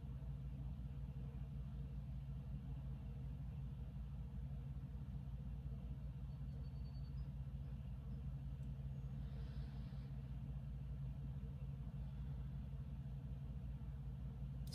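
Quiet room tone: a steady low electrical or fan-like hum, with a faint brief hiss about two-thirds of the way through.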